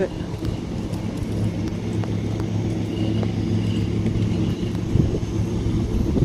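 Steady low mechanical hum, like running machinery or an idling motor, with a faint higher tone coming and going.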